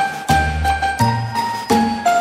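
Background music: a chiming, bell-like melody over sustained bass notes, with a new note struck about every half second.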